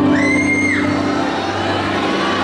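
Live salsa band playing, with a high held note, a cry or whistle from the stage or crowd, rising over the music for under a second near the start.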